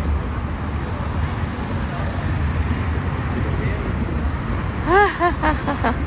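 Steady road traffic rumble from cars and buses on a busy city street, with a woman's voice coming in about five seconds in.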